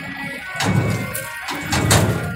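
Two dull, heavy thumps about a second apart, over faint background music.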